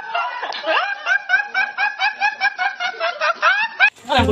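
A young man laughing uncontrollably in a rapid run of high-pitched snickers, about five short rising bursts a second. It cuts off abruptly near the end.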